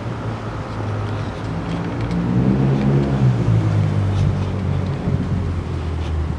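Low hum of city road traffic, with one vehicle's engine swelling and changing pitch as it passes, loudest about halfway through.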